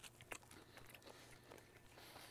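Near silence, with a few faint clicks and crunches of people chewing a bite of toast.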